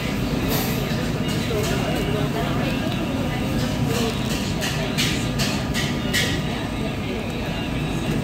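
A paper wrapper crinkling as a wrap is rolled up tightly in it, with a cluster of sharp crackles about five to six seconds in, over a steady low kitchen rumble.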